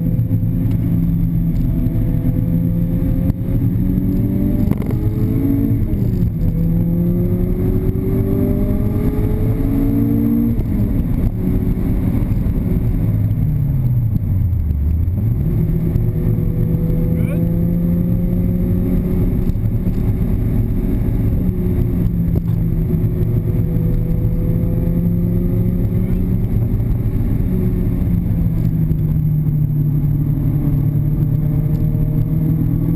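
Lotus Elise SC's supercharged four-cylinder engine heard from inside the cabin, pulling hard on track. The revs climb twice in the first ten seconds and drop sharply near ten seconds in. They fall and come back up around fourteen to fifteen seconds, then hold steady.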